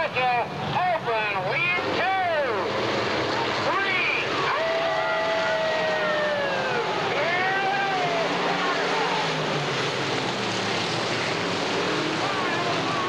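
Dirt-track race cars' V8 engines running at speed in a pack, over a steady din from the rest of the field. Several engine notes rise and fall in quick succession at first; later one held note slowly drops in pitch over a couple of seconds as a car goes past or lifts into a turn.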